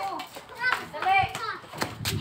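Children's voices at play: short high-pitched calls and chatter, with a sharp click or knock near the end.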